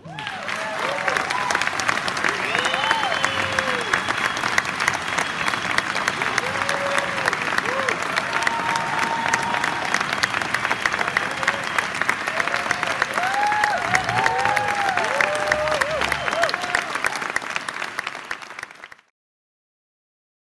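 Concert audience applauding at the close of an orchestral piece, dense steady clapping with scattered cheers and whoops, cutting off suddenly about a second before the end.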